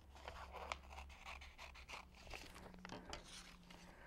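Faint, irregular snips of scissors cutting through two sheets of paper glued back to back.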